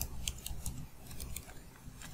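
Computer keyboard keys being typed: a handful of faint, quick key clicks, mostly in the first second.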